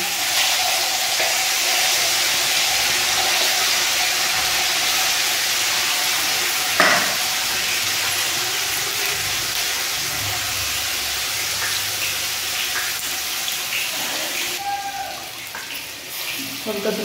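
Masala frying in hot oil in a steel kadai with fenugreek seeds and dried red chillies, a steady loud sizzle that eases slightly toward the end. A single sharp knock sounds about seven seconds in.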